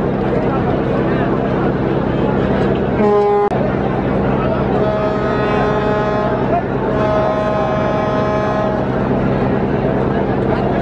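Boat horns on a river: a short blast about three seconds in, then a longer horn from about five to nine seconds with a brief break in the middle, over the steady drone of boat engines.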